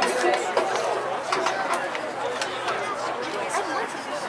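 Many voices talking over one another in open-air chatter, with scattered sharp clicks.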